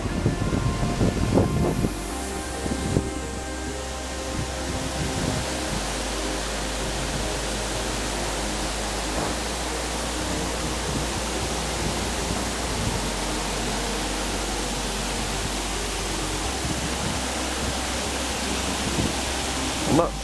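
Steady rush of water pouring over a mill dam spillway.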